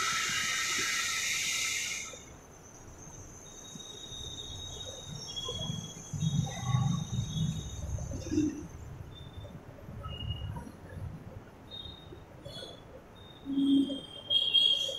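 Felt-tip marker squeaking on a whiteboard as words are written: short, thin, high-pitched squeaks, one per stroke, scattered over several seconds, with soft low knocks between them. A louder rushing noise fills the first two seconds.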